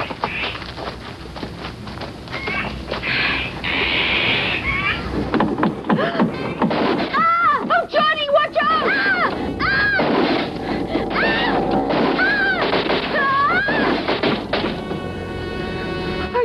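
Film soundtrack: music with wordless vocal cries that rise and fall over and over, a hissing burst a few seconds in, and a thunk. A buzzing tone comes in near the end.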